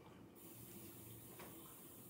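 Near silence: faint room tone with a low steady hiss and one faint click.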